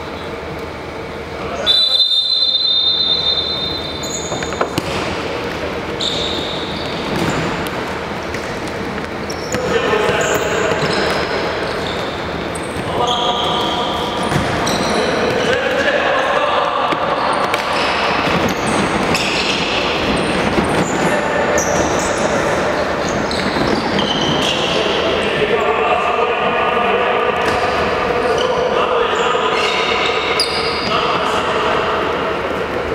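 A referee's whistle blown in one long blast about two seconds in, at the kickoff of a futsal match. After it comes the play: a futsal ball being kicked and bouncing on a hardwood gym floor, with players shouting, all echoing in a large sports hall.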